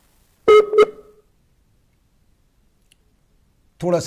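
A short electronic beep about half a second in: two quick pulses of the same ringing tone, together lasting about half a second, amid otherwise near silence.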